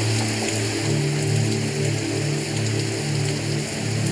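Background music score: sustained low drone notes that shift slowly between two pitches, over a steady hissing texture like rain.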